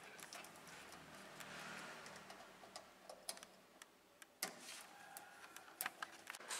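Faint, scattered clicks and taps of a screwdriver working the cable terminals under a wall-mounted solar inverter, with two sharper clicks in the second half.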